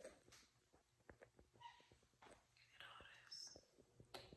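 Near silence, with faint whispering or breathy sounds and scattered small clicks and knocks.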